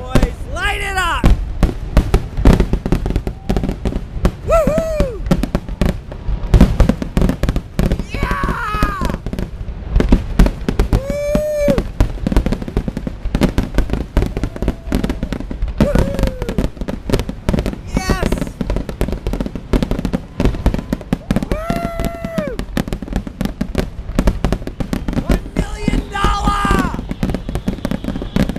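Fireworks display: aerial shells bursting in a dense, unbroken barrage of bangs and crackles. Spectators' voices call out about eight times across the barrage, each call rising then falling in pitch.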